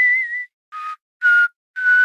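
A person whistling a short tune in separate notes: a wavering high note, a lower one, a middle one, then a longer held note, with breath audible around each.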